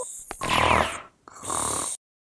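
Cartoon snoring sound effect from sleeping characters: two snores in a row, the second with a hissy exhale.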